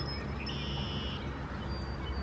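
Steady low outdoor rumble with a brief high bird call from about half a second to just over a second in.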